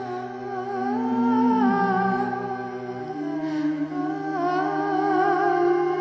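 Background music: a slow, wordless hummed vocal melody over long held low notes, the low note changing about halfway through.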